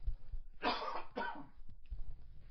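A man coughing to clear his throat: two short rough bursts about a second in.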